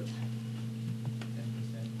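Room tone in a pause: a steady low hum, with a couple of faint clicks about a second in.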